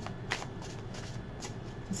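A deck of oracle cards being shuffled by hand, a run of soft card swishes about three a second.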